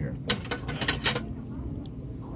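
Metal cutlery clinking and rattling in a table-top utensil caddy as a spoon is pulled out: a quick run of sharp clinks in the first second or so.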